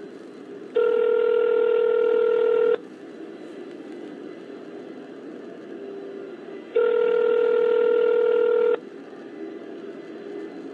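Telephone ringback tone heard down the phone line: two steady 2-second rings about four seconds apart, with low line hiss between, the sign that the called phone is ringing and not yet answered.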